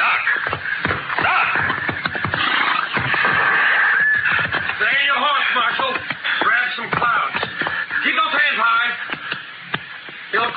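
Radio-drama sound effect of horses' hoofbeats, a quick run of knocks, under music with a held tone in the first few seconds. Voice-like sounds follow in the second half, and it drops quieter near the end.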